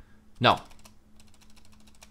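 A quick run of faint keystrokes on a computer keyboard as a just-typed line of code is deleted.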